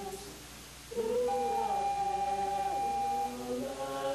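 Voices singing sustained a cappella chords. One chord ends just after the start, and a new chord enters about a second in with a long, steady high note held over it.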